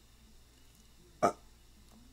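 Quiet room tone, broken about a second in by one short, hesitant spoken 'uh'.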